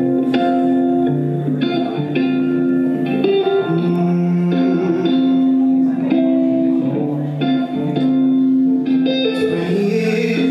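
Guitar music: plucked chords that ring on, with a new chord or note struck every second or so.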